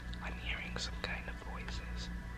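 A man whispering close to the microphone in short hissy phrases, over a steady low hum.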